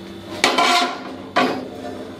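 Two clinks of dishware on a ceramic plate, about a second apart, each ringing briefly.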